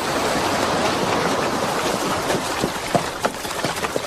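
Steady rushing of sea water, surf washing in on a shore. In the second half it is joined by a few short splashes, as hooves wade through shallow water.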